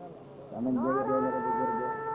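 A man's voice, quieter at first, then from about half a second in holding one long, steady chanted note, the drawn-out delivery of a preacher intoning verse.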